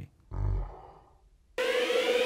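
A deep boom sound effect that fades away over about a second, then electronic dubstep-style music with a rising synth tone starts near the end.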